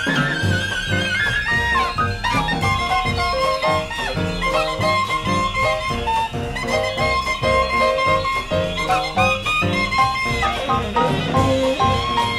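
Live small-group jazz: a wind instrument plays a melodic line of held, wavering notes over piano chords and drums keeping a steady beat.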